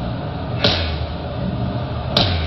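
Sparse live band accompaniment: low held bass notes with one sharp hit a little over half a second in, part of a slow pattern of hits about a second and a half apart.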